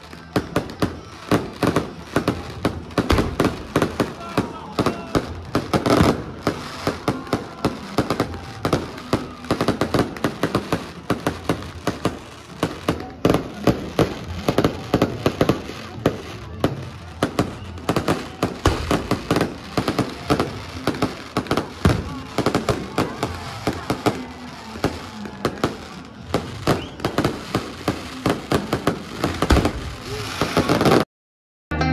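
Aerial fireworks going off in a continuous barrage, several sharp bangs and crackles a second with no let-up.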